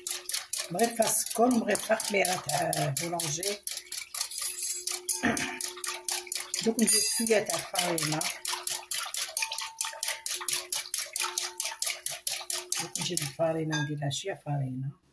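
Metal balloon whisk beating a thin milk and olive oil mixture in a glass bowl: a rapid, even run of clicks and wet swishes as the wires strike the glass.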